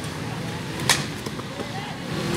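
A cricket bat strikes the ball once about a second in with a single sharp crack, over a murmur of distant voices.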